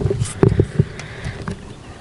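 A few light clicks and handling noises from hands working a herabuna float rod's line and float while shortening the fishing depth.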